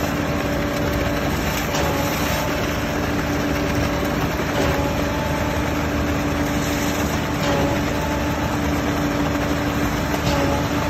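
Concrete pump truck running steadily while pumping concrete through its boom hose, with a short whine that comes back about every three seconds as the pump cycles.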